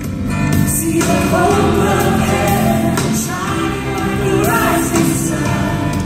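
Live contemporary worship music: a band with lead vocalists and a choir singing together, the voices coming in about a second in over the full band.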